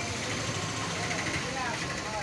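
Busy street ambience: a steady background of traffic noise with faint voices of people nearby.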